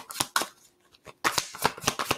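A deck of oracle cards being shuffled by hand: quick runs of card flicks, with a short pause about halfway through before the shuffling starts again.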